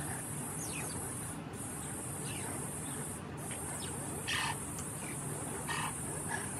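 Mongooses giving short, sharp chirping calls, with two louder calls about four and six seconds in, while mobbing a python. Behind them, night insects trill steadily in a high band that breaks off briefly twice.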